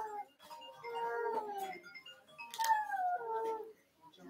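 A dog howling: long drawn-out cries, one tailing off at the start and two more after it, each sliding down in pitch at its end.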